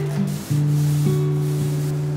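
Background music with sustained low notes, over a faint rasping rub of a paint roller being rolled through paint in a plastic tray.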